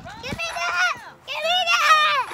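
Children's high-pitched voices calling out, twice, in bursts of shouting play.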